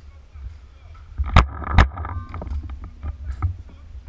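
Paintball marker firing: two sharp, loud shots under half a second apart about a second and a half in, followed by several fainter pops.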